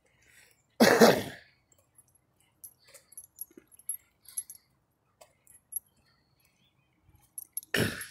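A man coughs once, a single short harsh cough about a second in, followed by a few faint light clicks and jingles.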